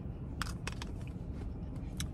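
Eating sounds: a few short, sharp clicks of mouth and plastic fork as ice cream is taken off the fork, over a low steady rumble in a car cabin.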